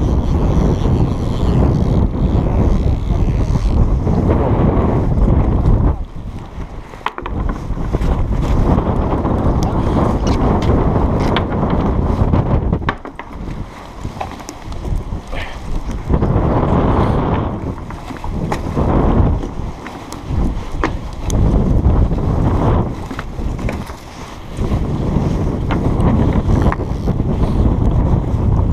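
Wind buffeting the camera's microphone in gusts: a loud, low rumble that eases off for a second or two several times.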